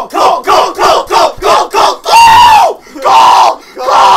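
Several voices chanting one short word over and over, about four times a second, then breaking into three longer drawn-out yells.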